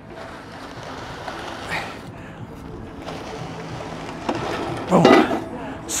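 Metal prowler sled dragged across rubber gym flooring, a steady scraping from the heavy friction against the floor, with a louder rush about five seconds in.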